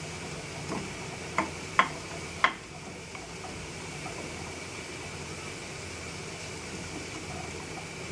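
Minced meat and onion sizzling in a frying pan on a gas stove, a steady hiss. It is stirred with a wooden spatula, giving four sharp taps against the pan in the first two and a half seconds.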